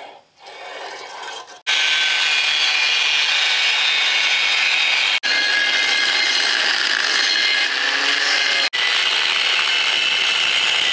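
A scribe scratching a line onto steel square tubing. Then, from just under two seconds in, an angle grinder with a cutoff wheel cuts through the tubing with a loud, steady grinding whine, broken off for an instant twice.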